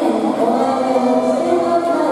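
A crowd of spectators at a swimming meet chanting together, many voices holding long tones at several pitches that overlap.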